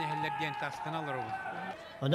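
A man speaking in an interview, his voice steady with short pauses between phrases.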